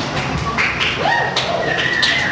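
Electric guitar through an amplifier: a note slides up about a second in and is held, then a higher note rings on near the end, leading into strummed playing.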